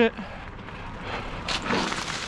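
Mountain bike rolling down a dirt singletrack: a steady rush of tyre and trail noise, with a sharp rattle about one and a half seconds in, as from a bump.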